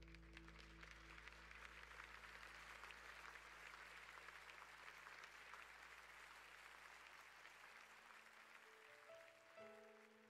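Faint applause, a speckled patter of clapping, as a held low chord fades away. Soft separate piano notes begin near the end.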